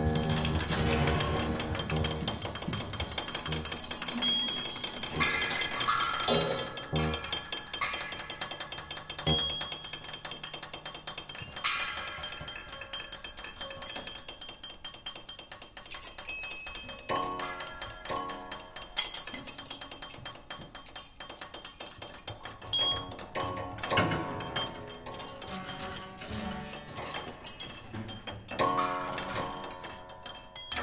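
Free improvisation on grand piano and tabletop percussion: irregular struck notes, metallic clinks and ringing tones with no steady beat.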